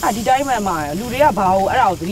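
A person talking throughout, over a faint steady hiss of meat sizzling on a charcoal tabletop grill.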